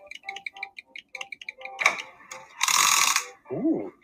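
Toy-shop sound effects: a run of quick little clicking, ratchet-like notes, a short noisy burst near the middle, and a brief tone that rises and falls near the end.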